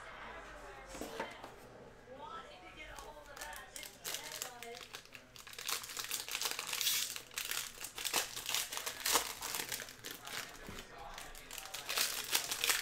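Foil trading-card pack wrappers crinkling and tearing as they are opened by hand, the crackling growing louder and busier from about four seconds in.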